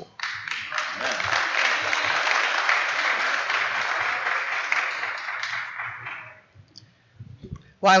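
A congregation applauding steadily for about six seconds, then fading out.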